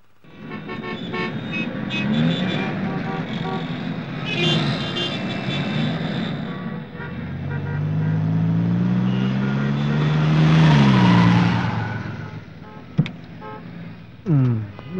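City traffic with car horns sounding, then a car approaching, its engine note rising and then dropping away as it slows. A single sharp click comes near the end.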